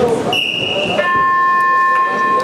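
A shrill whistle blast of about half a second, then a steady electronic buzzer tone of several pitches at once that starts about a second in and holds on, both over arena crowd noise: the mat's signals around the start of a wrestling bout.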